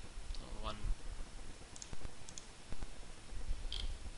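Computer mouse buttons clicking a few times, short sharp clicks, two of them in quick succession past the middle and one near the end, with a brief voice sound just before a second in.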